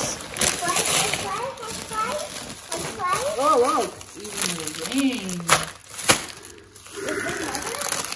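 A person's voice making wordless sing-song sounds, its pitch warbling up and down a few times in the middle, with a few sharp crackles of candy packaging being handled.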